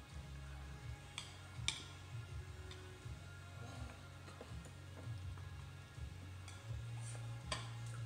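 A baby feeding herself soft, juicy baked acorn squash from a plastic high-chair tray, with a few sharp taps on the tray. Near the end, a piece of squash she throws hits the floor.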